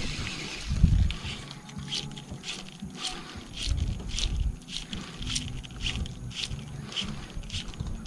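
Fly line being stripped in on a retrieve: a string of short, quick rasps, about two or three a second, as the line is pulled through the rod guides. Low gusts of wind on the microphone come and go underneath.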